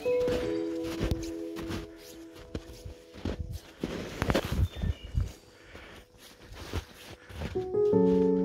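Background music with held notes that fades out over the first couple of seconds. Then come irregular footsteps crunching through deep snow, until music starts again at the very end.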